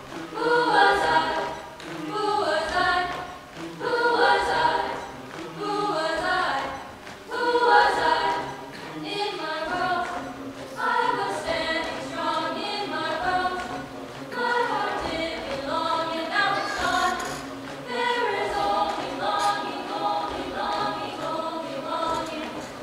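Mixed-voice chamber choir singing a cappella in close harmony, in phrases that swell and fade about every two seconds at first, then in longer held phrases.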